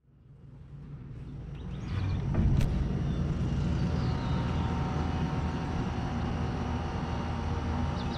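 Distant road traffic: a steady low hum that fades in over the first two seconds.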